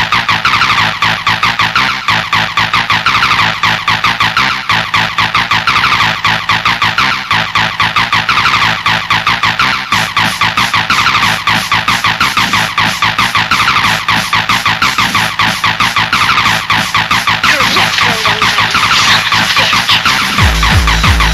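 Fast gabber hardcore techno music: a dense, rapid, evenly repeating beat under a synth line that keeps gliding up and down in pitch.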